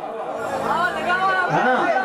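A male bhajan singer's voice through a stage PA, vocalising "ha ha" near the end, over a steady low held note that fades after about a second and a half.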